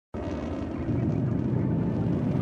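Rocket-launch sound effect: a steady low rumble of engine ignition that starts abruptly and grows louder about a second in.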